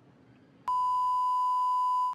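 Edited-in television test-card tone: a steady, unchanging electronic beep that cuts in abruptly about two-thirds of a second in, after a moment of faint room tone.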